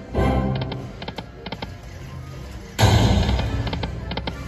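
Casino video slot machine playing its electronic game music, with a run of short clicks as the reels land. A louder burst of game sound comes about three seconds in as the next spin starts.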